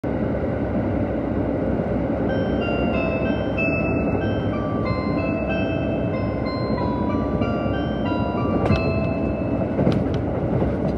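Kiha 183 series diesel train running, heard from inside the car as a steady rumble. From about two seconds in, an onboard chime melody plays over it, the signal that precedes the arrival announcement. A couple of sharp clicks come near the end.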